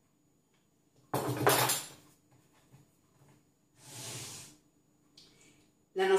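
A rolling pin and a metal tart pan being moved about on a wooden pastry board: a sharp knock about a second in, then a softer sliding rub around four seconds in.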